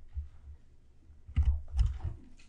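Stylus tapping and scraping on a tablet surface while a word is handwritten: a quick cluster of clicks about a second and a half in, over a low electrical hum.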